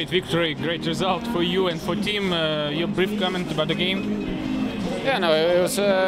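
A man speaking, with music playing in the background.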